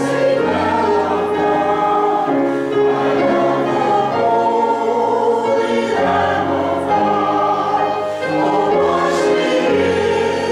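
A small mixed church choir of men's and women's voices singing slow, sustained chords under a conductor, with a short break between phrases about eight seconds in.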